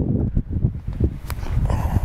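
Wind buffeting the microphone, a heavy, uneven low rumble, with one sharp click about a second in.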